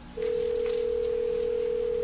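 Telephone ringback tone heard over a speakerphone: a single steady ring tone lasting about two seconds. It means the outgoing call is ringing at the far end and has not yet been answered.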